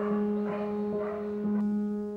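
Soft solo piano music: a note repeated about twice a second over held, sustained tones.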